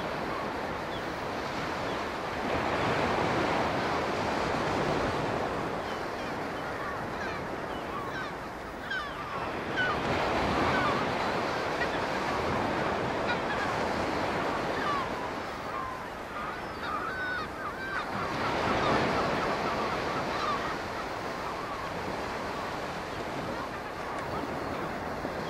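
Open sea water rushing and washing, swelling and easing in slow surges several seconds apart. Through the middle of the stretch, many short high calls sound over it.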